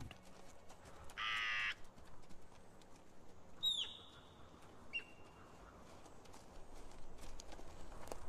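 Three short animal calls: a harsh, buzzy call about a second in, then a high whistled call that drops sharply in pitch and holds briefly, and a short higher note about five seconds in.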